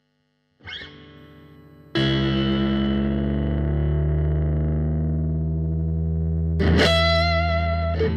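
Distorted electric guitar through effects. A soft note sounds about a second in, then a loud chord is struck about two seconds in and left ringing, and new picked notes come in near the end.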